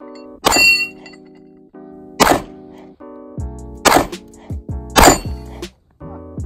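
World War II German Luger pistol (9 mm) fired four times, roughly a second and a half apart, at a steel target; the first shot is followed by a brief metallic ring. Background music plays underneath.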